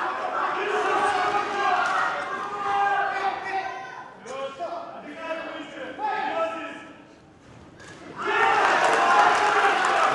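Voices calling out in a large hall, with the thuds of gloved punches and kicks landing during a kickboxing exchange.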